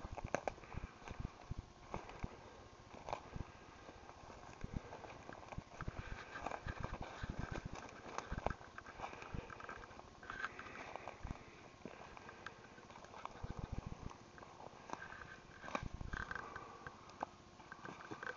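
Footsteps on the forest floor: an irregular run of crunches and knocks as feet push through dead leaves, twigs and ferns.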